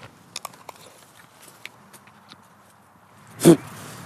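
Scattered small, crisp crunching clicks of someone chewing a bite of fresh raw apple, then one brief, loud voiced sound near the end.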